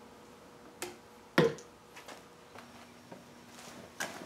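Wooden hive frames knocking against the wooden super box as they are set in. A light knock comes about a second in and a sharper one just after, followed by a few faint taps.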